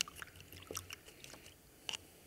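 Paintbrush being rinsed in a plastic water cup: a string of small clicks and taps as the brush knocks against the cup, with a sharper tap at the start and another near the end.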